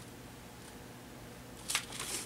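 Quiet room with a faint steady low hum, and one short rustle near the end.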